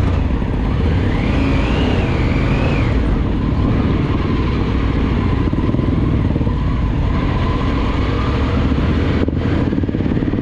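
Triumph Tiger 900 GT motorcycle's three-cylinder engine running steadily while riding, with a brief high whine that rises and falls about a second in.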